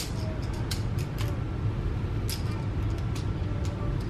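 Magformers plastic magnetic tiles clicking together as a child snaps squares onto a shape, several short sharp clicks spread over the seconds, over a steady low hum.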